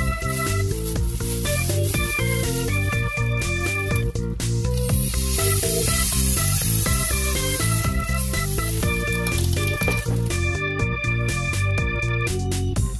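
Background music throughout. From about four seconds in, a steady hiss of butane gas spraying into a plastic bag lasts about six seconds, then stops.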